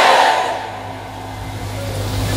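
The preacher's amplified voice echoing and dying away through the loudspeakers, leaving a steady low hum from the sound system that grows slightly louder in the second half.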